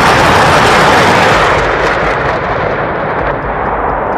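A salvo from truck-mounted multiple rocket launchers: rockets launching in rapid succession as one dense, continuous roar. It is loudest in the first two seconds and eases slightly after that.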